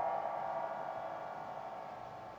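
A plucked pipa chord fading out, several notes ringing on together with a slight shift in pitch at the start, as in a string bend, and no new note played.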